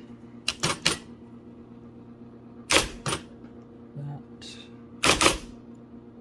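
1980 IBM Selectric III electric typewriter typing a few characters in small groups of sharp clacks as its type ball strikes the cardstock, over the steady hum of its running motor.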